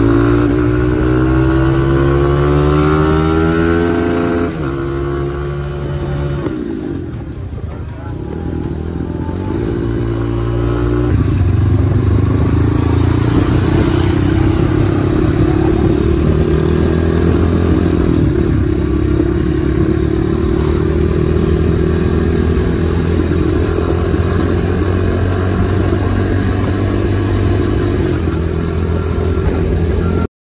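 Diablo supermoto motorcycle engine on a road ride: the revs climb over the first few seconds and drop back at about four and a half seconds. The engine runs lower and quieter for a few seconds, then pulls strongly again from about eleven seconds, with the revs rising slowly through the rest.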